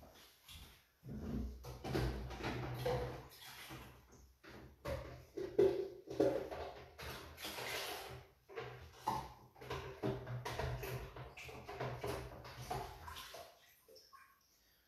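Paper towel rustling and crumpling in the hands, then irregular rustles and light knocks of things being handled in a plastic tub.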